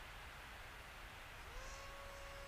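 Faint hiss, then about one and a half seconds in a faint steady whine that rises quickly in pitch and holds: the model glider's electric motor and propeller throttling up from a glide.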